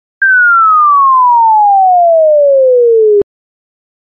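Electronic sine tone sweeping steadily down in pitch for about three seconds, then cutting off suddenly: a demonstration of pitch falling as the frequency of the sound wave decreases.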